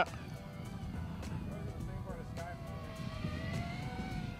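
Wind buffeting the microphone, with the faint, thin whine of a distant small electric motor and propeller that drifts slowly in pitch and rises a little in the second half.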